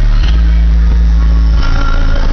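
Two 15-inch AQ HDC3 car-audio subwoofers on an Orion XTR amplifier playing bass-heavy music very loudly, the deep bass notes changing about a quarter second in and again near the end. The subwoofers are new and still stiff, being played for the first time.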